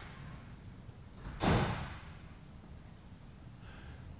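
A person's single short breath, about a second and a half in, over quiet shop room tone.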